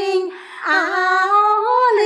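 Two women singing a Quan họ folk song unaccompanied, in unison, on long held, ornamented notes, with a brief breath break about half a second in.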